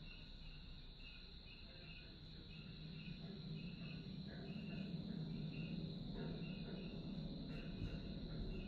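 Crickets and other insects chirping: a steady high trill with short chirps repeating about twice a second. Under them is a low rumble that grows louder about halfway through.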